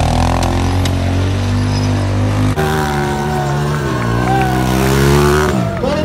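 Motorcycle engine held at steady high revs, then revving up and down after an abrupt change about two and a half seconds in, with music playing over it.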